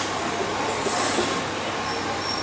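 Steady noise without speech, with a brief high hiss about a second in.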